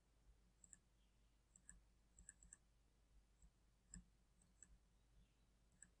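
Near silence with several faint, irregularly spaced computer mouse clicks.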